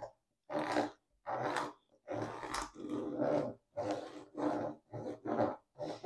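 A small plastic scraper rubbed back and forth over clear hot-fix tape laid on ss10 hot-fix rhinestones in a flock template, pressing the stones onto the tape. There are about eight short scraping strokes with brief pauses between them.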